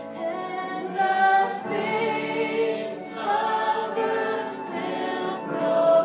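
A woman singing a slow song into a microphone, accompanied by flute and strummed acoustic guitar, in long held notes that change about once a second.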